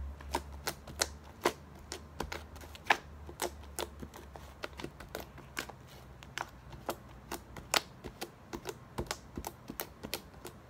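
Purple slime being poked, pressed and folded by fingers on a tabletop, giving irregular sharp clicks and pops, a few a second.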